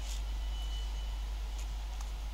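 Class 390 Pendolino electric train standing at a platform, a low steady rumble, with one high steady beep lasting under a second near the start and a few faint ticks.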